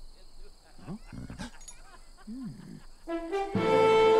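A couple of short, low animal or character grunts, quiet, in the first half; then an orchestral film score comes in about three seconds in with rising held notes and quickly swells to full volume.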